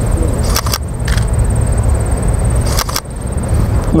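Camera shutter clicks from a Sony A7s, a few near the start and a pair about three seconds in, over a steady low rumble and a faint steady high whine.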